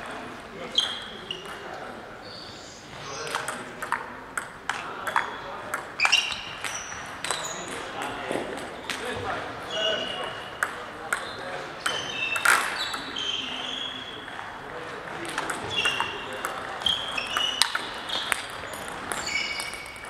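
Table tennis ball clicking off the bats and bouncing on the table through a series of rallies, many hits with a short ringing ping, in a gym hall.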